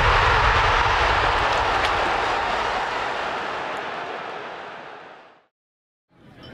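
Airy rushing whoosh of a logo-sting sound effect, loudest at the start and fading out over about five seconds, then silence.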